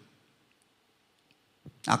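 A pause in a man's amplified speech: near silence for about a second and a half, then one short faint click, and his voice resumes through a handheld microphone near the end.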